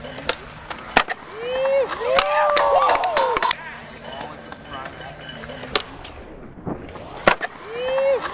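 Skateboard wheels rolling on concrete, with sharp clacks of the board striking concrete and coping four times. A person yells loudly in the middle, the pitch rising and falling.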